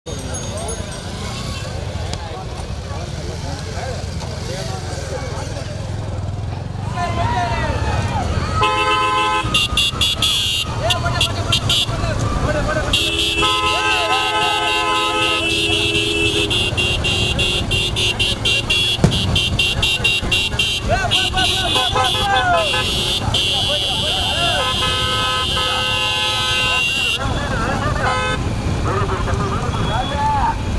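Vehicle horns honking in long blasts several times over the steady rumble of motorcycle engines and shouting voices, with a fast high clatter running through the middle.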